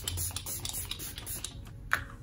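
Pump-action makeup setting spray misting onto the face: a rapid run of short hissing sprays, then a single click just before the end.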